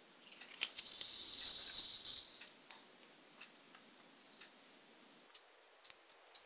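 Faint handling noise of a thin clear plastic jelly cup and yarn: a short scratchy rubbing about a second in as the yarn is drawn through the hole in the cup, then a few small scattered clicks.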